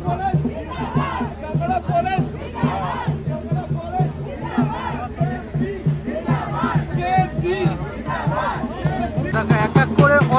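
A crowd of many voices shouting and chanting together over a steady, evenly repeating drumbeat.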